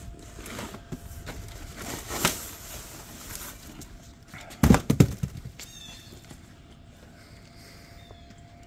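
Cardboard box and wrapping being handled as a wrapped part is pulled up out of it: rustling and scraping, with a quick run of loud knocks from the box about halfway through.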